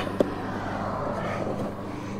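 Stiff leather liner mat rubbing and scraping as it is pushed into a car door pocket, with a single click a moment in, over a steady low hum.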